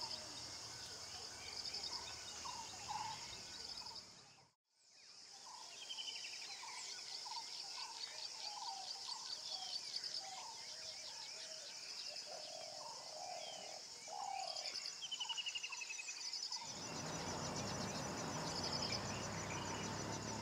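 Faint nature ambience: scattered bird chirps and short descending trills over a steady high insect buzz. It dips out briefly about four and a half seconds in, and a broad low rushing noise joins near the end.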